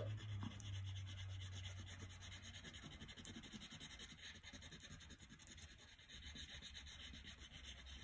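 Wax crayon rubbing back and forth on paper as an area is coloured in: a faint, steady scratchy rubbing.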